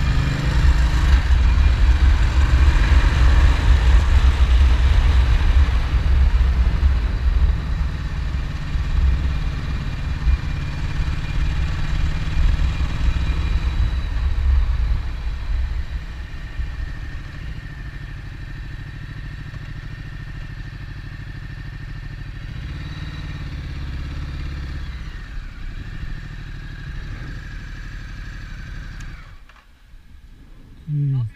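2015 Ducati Multistrada's V-twin engine running under way with road and wind noise, loudest in the first half and easing off as the bike slows. The sound drops away sharply just before the end as the bike comes to a stop.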